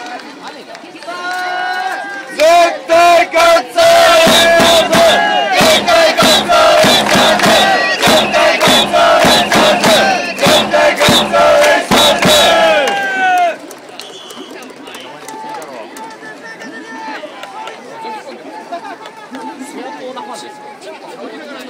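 A baseball cheering section shouting in unison with sharp rhythmic beats, loud from about two seconds in and cutting off suddenly after about 13 seconds, leaving the murmur of a stadium crowd.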